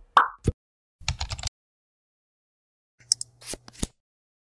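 Short pop and click sound effects from an animated logo end card: a quick blooping pop with a plop just after it, a fast rattle of clicks about a second in, and a cluster of clicks over a brief low hum near the end.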